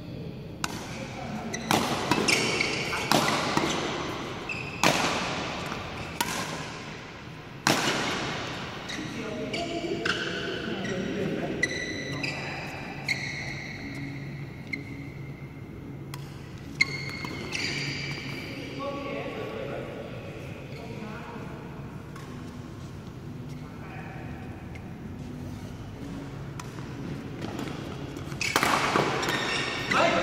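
Doubles badminton rally in a large hall: sharp racket strikes on the shuttlecock, several in quick succession in the first eight seconds and fewer after, with short high squeaks and players' voices, growing louder near the end.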